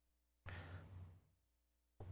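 Near silence from a gated microphone, broken about half a second in by one short breath out near the mic.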